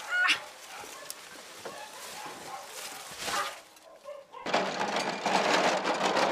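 Farmyard birds calling, with one loud pitched call near the start and another about three seconds in. About four and a half seconds in, this gives way to a steady rattling rumble: a metal wheelbarrow being pushed at a run over asphalt.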